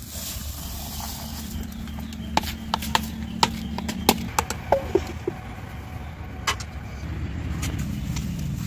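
A series of sharp light clicks and clatters as raw rice and a plastic bowl and sieve are handled, mostly in the middle few seconds, over a steady low rumble.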